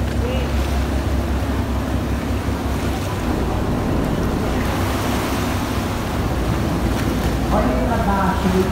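A boat's steady low rumble mixed with wind on the microphone and water washing along the hull, with a swell of water hiss around the middle.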